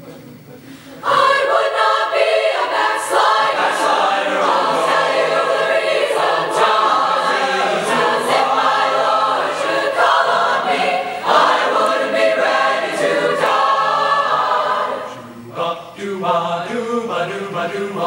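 Mixed-voice choir singing a spiritual in close barbershop and jazz-style harmony. After a brief pause it comes in full about a second in, and drops back for a moment near the end before going on.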